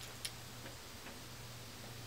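Faint, steady low hum with one light click about a quarter second in.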